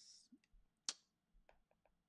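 A single sharp click about a second in, followed by a few faint, quick clicks, over near silence.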